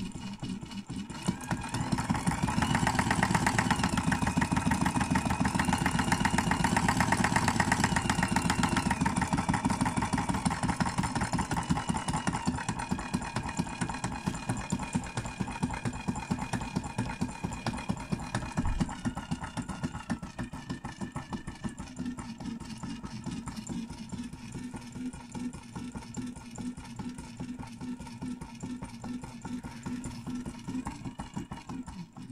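The Wobble Dog 9003i hot-dog wobbling machine running, its crank disc and connecting arm swinging a clamped sausage back and forth with a fast, steady mechanical rattle and a faint whine. It grows louder in the first two seconds, then eases off gradually through the second half.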